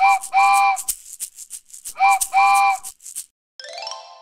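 Cartoon train music cue: a shaker keeps a steady chugging rhythm of about four beats a second, while a pitched toy-train whistle sounds two pairs of toots, short then long, at the start and again about two seconds in. Near the end a run of stepped tones begins.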